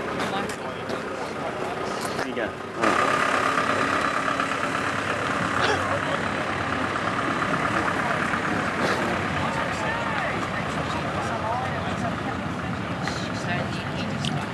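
Outdoor crowd chatter with a motor vehicle engine running at idle; the whole sound jumps suddenly louder about three seconds in and stays there.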